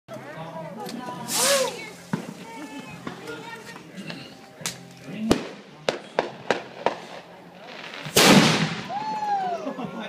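Homemade firework going off with one loud boom about eight seconds in, a blast strong enough to be felt as a pressure wave. It is preceded by a short hiss about a second and a half in and a string of sharp cracks about five to seven seconds in.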